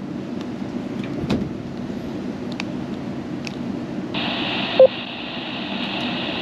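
A handheld two-way radio's speaker. After about four seconds of plain background hum, a steady hiss comes on with a short beep. This is the repeater's tail, heard once the transmission ends, and it shows the radio has keyed up the repeater.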